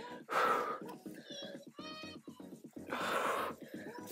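A woman's two hard, breathy exhales, about two and a half seconds apart, from exertion while getting into a decline push-up, over background workout music.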